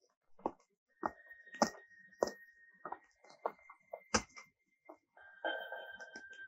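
Footsteps of a man walking at an unhurried pace, about one step every half-second or so, with a thin steady high tone underneath from about a second in. A fuller sound, the start of music, comes in near the end.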